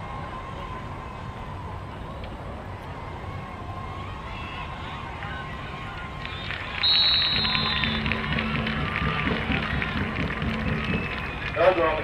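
Low steady rumble of an outdoor field. About seven seconds in, a referee's whistle blows briefly to end a football play, and spectators and players start shouting and cheering.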